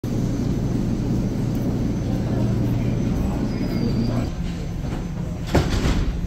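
Toronto subway train at a station platform, a steady low hum and rumble that drops away about four seconds in. A single sharp knock comes near the end.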